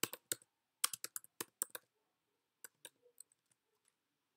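Typing on a computer keyboard: a quick run of about a dozen keystrokes in the first two seconds, then a few scattered taps.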